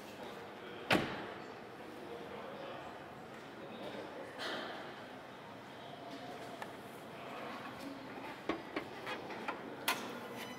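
A single sharp thunk from the Lada Vesta's body about a second in, as the bonnet release is worked. Near the end, several light clicks and knocks as the bonnet's safety catch is freed and the bonnet is lifted, over quiet showroom room tone.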